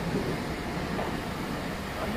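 Steady outdoor background noise: a low vehicle rumble under an even hiss, with no distinct events.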